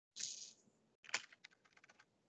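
A few faint computer keyboard key clicks, one sharper than the rest about a second in, after a brief soft hiss near the start.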